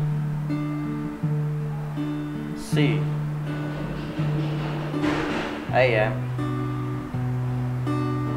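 Acoustic guitar fingerpicked slowly: a bass note, then higher strings plucked one at a time, over a C chord that changes to A minor about three-quarters of the way through.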